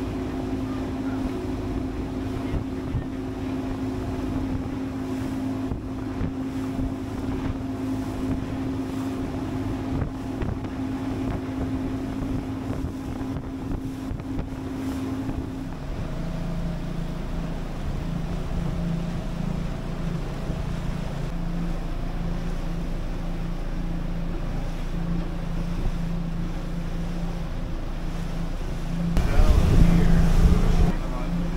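A motorboat engine drones steadily while under way, with wind buffeting the microphone and water rushing past the hull. About halfway through, the drone shifts to a lower pitch, and a louder rush of noise comes near the end.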